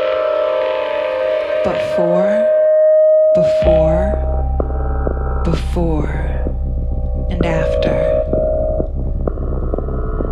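Sustained synthesizer chords from a Korg M3 keyboard, joined about three and a half seconds in by a deep low drone. Short swooping, sliding tones cut in every couple of seconds over the held notes.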